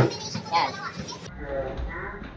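A sharp knock at the very start as a plastic bottle lands on a counter, then a group's excited voices and chatter. About a second in the sound changes abruptly to a low rumble with fainter voices.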